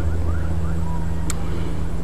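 A steady low mechanical hum, like a running engine, with faint short chirps over it and one sharp click about a second and a half in.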